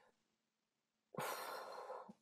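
Near silence, then about a second in a person takes an audible, sigh-like breath close to the microphone, lasting just under a second.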